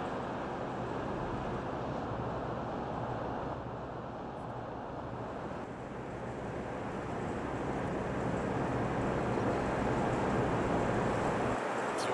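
Steady engine-like drone with a hiss over it, from a running generator.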